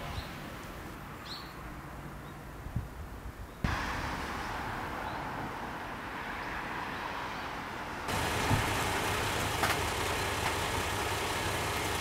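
Outdoor vehicle noise in three edited pieces, cut sharply about three and a half and eight seconds in. The last and loudest piece is a diesel railcar's engine running steadily at idle, with a low hum.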